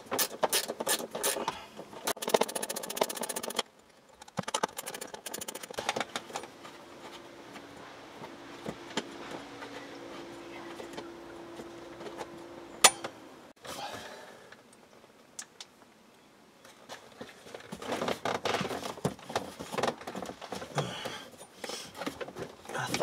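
A hand ratchet clicking in quick runs for the first few seconds as the bolts on the blower motor housing bracket are loosened. This is followed by quieter handling of tools and plastic trim, one sharp click about halfway through, and more clattering and rustling near the end.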